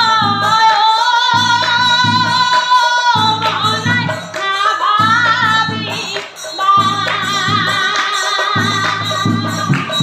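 A woman's solo voice sings an Assamese Nagara Naam devotional chant in long, wavering held notes, with large brass bortal cymbals clashing in rhythm beneath it.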